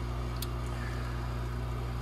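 Sputter coater's mechanical vacuum pump running with a steady low hum, pumping the air out of the sample chamber before the argon fill.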